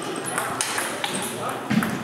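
Table tennis ball being struck and bouncing, a few sharp clicks with the loudest near the end, over background chatter in a large hall where other tables are in play.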